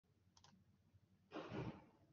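Near silence on a presenter's microphone, broken by two faint clicks a little before half a second in and a short, louder rush of noise at about one and a half seconds.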